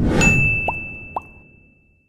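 Outro sound effect: a sudden low hit with a bright, bell-like ding that rings on and slowly fades, with two short plops that rise in pitch, about two-thirds of a second in and again half a second later.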